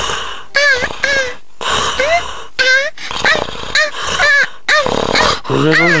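Cartoon puppy's voice-acted yips and whimpers: a quick run of about a dozen short yaps, each rising and falling in pitch, with a lower call near the end.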